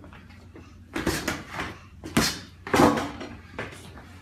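A run of thumps and scuffling from a man and a small boy sparring: about five sudden hits and bumps in under three seconds, starting about a second in.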